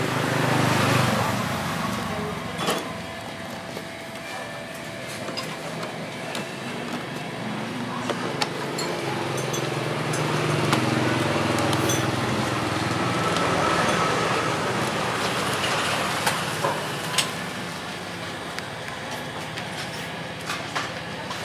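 Plastic side fairing panels of a Kawasaki motorcycle being handled and pressed into place by hand, with a few sharp clicks, over a steady low hum.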